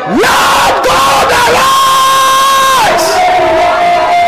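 A man's loud wordless cry into a microphone. It swoops up at the start and is held for about three seconds, then drops and runs into a second held cry at a lower pitch. Underneath is the noise of a congregation praying and shouting aloud.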